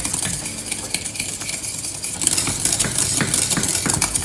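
Wire whisk stirring thick chocolate custard in a small stainless-steel saucepan, its wires scraping and clicking against the pan in many quick strokes. The custard has thickened and is almost ready.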